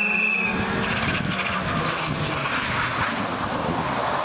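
Škoda Fabia R5 rally car's turbocharged four-cylinder engine running hard as the car approaches and passes through the corner, with its tyres hissing on the wet tarmac. A steady high whine stops about half a second in.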